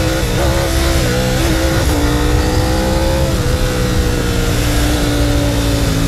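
Ducati Panigale V4 SP2's 1,103 cc Desmosedici Stradale V4 engine pulling steadily at speed on the road, heard from onboard under heavy wind rush on the microphone. The note climbs slightly, then eases back a little about halfway through.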